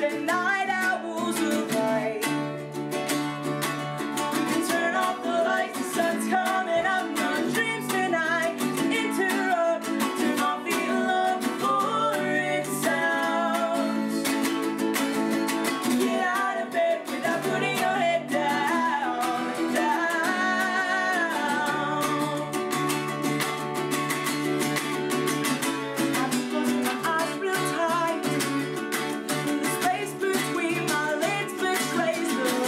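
A woman singing while strumming a ukulele, with an acoustic guitar strummed alongside her, a live acoustic duo performance.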